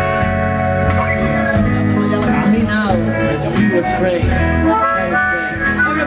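Diatonic harmonica (blues harp) solo through a microphone, with notes bending down and back up, over a live band's electric guitars, bass, drums and keyboards.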